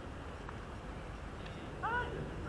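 Steady wind rumble on the microphone, with a distant high voice calling out near the end, the call rising in pitch.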